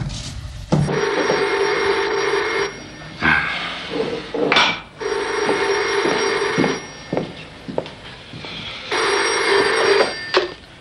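Telephone bell ringing three times, each ring lasting about two seconds, with a few thumps between the rings.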